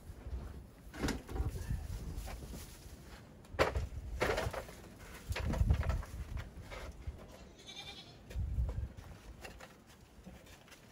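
Aluminium extension ladder being handled: a series of metallic clanks, rattles and thuds as it is set up against a wall and climbed, the loudest from about three and a half to six seconds in.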